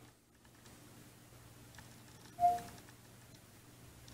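A single short electronic beep from the Cortana voice-assistant app on an Android phone, about halfway through, over quiet room tone with a faint hum.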